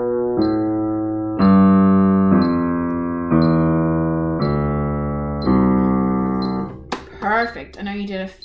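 Piano playing a C major scale slowly, one note at a time in an even beat of about one note a second. The notes are in a fairly low range. The scale ends about seven seconds in, and a woman starts talking.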